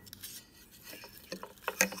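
Light scrapes and small clicks of a circuit board being pushed and shifted by hand against a metal chassis, with a few sharper clicks near the end.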